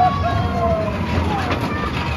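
Spinning roller coaster car running past on its track with a low rumble, its riders screaming in long, slowly falling overlapping cries.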